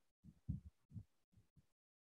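Near silence on a noise-gated call line, broken by a few faint, short low thumps, the clearest about half a second in and another about a second in.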